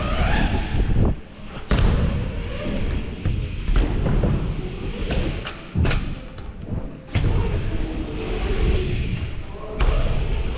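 Mountain bike riding over wooden skatepark ramps: a steady low rumble from the tyres on the wood, with a sharp knock three times, about two, six and ten seconds in, as the wheels hit the ramps.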